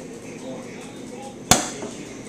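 A single sharp crack about one and a half seconds in: one cap on a roll of red paper toy caps going off as the flame burning along the strip reaches it.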